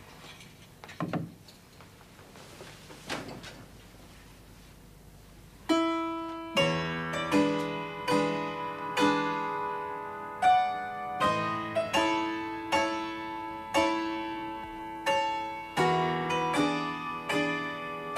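A few faint knocks, then from about six seconds in a simple tune played on a piano: single notes and chords struck at a steady, moderate pace, each one ringing and dying away.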